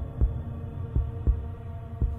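Soft background music with a sustained low drone, and low thumps repeating a few times a second in a heartbeat-like rhythm.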